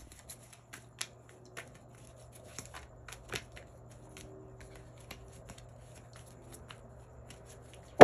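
Tarot deck being shuffled by hand: a string of quiet, irregular card clicks and flicks. A faint steady low hum runs underneath.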